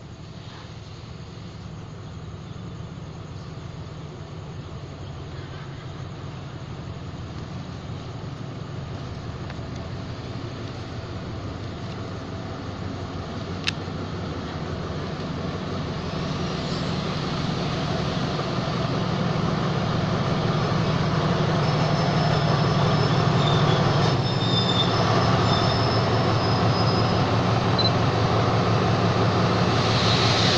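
Diesel locomotive of a State Railway of Thailand express train approaching and pulling into the station, its engine and the rolling train growing steadily louder. In the second half come high-pitched squeals as the train brakes to a stop. There is a single sharp click about halfway through.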